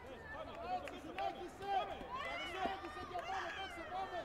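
Several people's voices calling and shouting over one another in a sports hall during a taekwondo bout, with a couple of short knocks.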